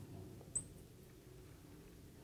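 Faint room hum with one short high-pitched squeak about half a second in, like a marker squeaking on a glass drawing board.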